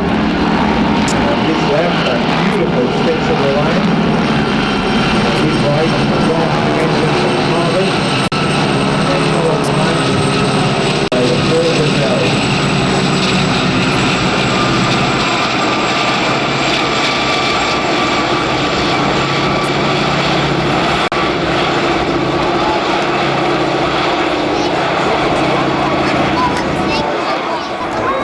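Formation flypast of Gazelle helicopters and piston-engined propeller light aircraft: a steady drone of engines and rotor blades, with a high turbine whine that slowly falls in pitch.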